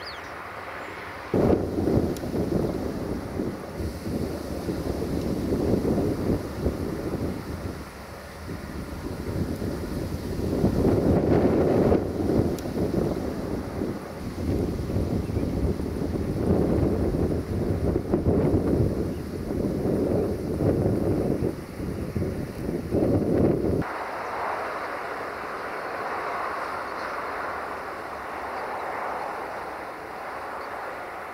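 Wind buffeting a microphone: a loud, gusty low rumble that starts suddenly about a second and a half in, rises and falls in gusts, and cuts off suddenly a few seconds before the end, leaving a fainter steady hiss.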